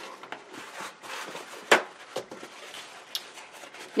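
Quiet scraping and rustling as a plastic palette knife lifts a skin of dried gesso out of wet gesso on a canvas board, with a paper towel handled near the end to wipe it away. One sharp tap stands out a little before the middle, with a couple of fainter ticks after it.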